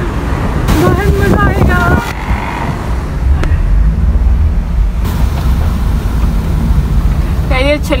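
A car driving along, its engine and tyres giving a steady low rumble heard from inside the cabin.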